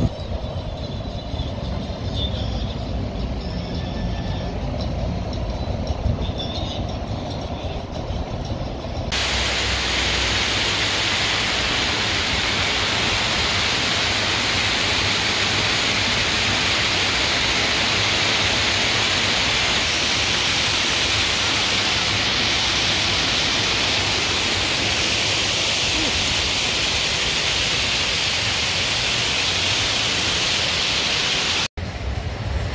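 Steady, loud rushing of an artificial waterfall and cascading water, starting abruptly about nine seconds in. Before it, a quieter low rumble.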